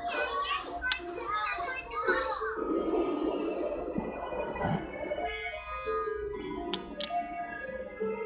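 Cartoon soundtrack played from a television and picked up in the room: high-pitched character voices at first, a rushing noise about three seconds in, then music with two sharp clicks near the end.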